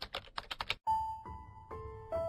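A typing sound effect: a quick run of about eight key clicks in under a second, then music with long held notes over a low rumble starts about a second in.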